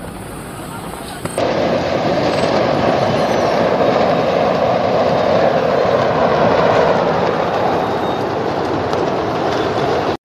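Fireworks going off in a dense, continuous crackle as a fireworks factory burns, starting abruptly about a second and a half in.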